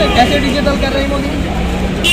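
A man talking into a handheld microphone over a steady low background rumble.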